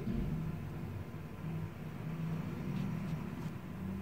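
Steady low mechanical hum of indoor background machinery, with a few faint ticks about three seconds in.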